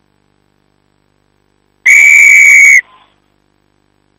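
Rugby referee's whistle: one loud, steady blast of about a second, starting about two seconds in and stopping sharply.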